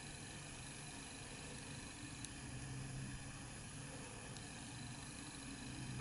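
Faint steady room tone: low hiss with a soft low hum.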